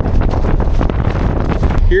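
Wind blowing hard on the microphone over the steady low running of a Polaris Ranger side-by-side's engine as it drives. A man starts talking near the end.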